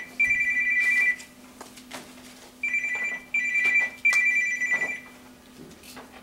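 Electronic telephone ringer trilling on two close high notes in short bursts: one group of rings at the start, then after a short pause a second group from about two and a half to five seconds in.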